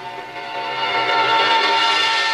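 A single long held chord of several steady notes, growing louder toward the middle, like a sustained horn or organ chord from a film score.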